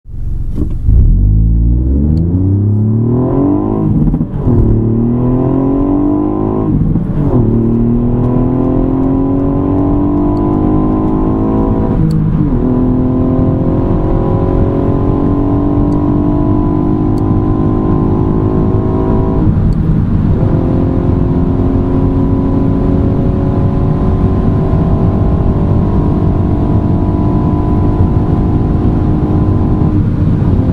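Ford Fiesta ST Mk8's 1.5-litre turbocharged three-cylinder engine at full throttle, heard from inside the cabin. Its pitch climbs through each gear and drops at four upshifts, about 4, 7, 12 and 19 seconds in, with each later gear rising more slowly. Road and wind noise run underneath.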